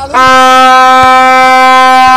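A horn blown in one long, very loud blast that holds a single steady note without wavering, starting just after the beginning.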